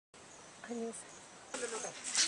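Faint, high-pitched insect chirring over a low background hiss, with a short steady hum-like tone just under a second in and voices starting about one and a half seconds in.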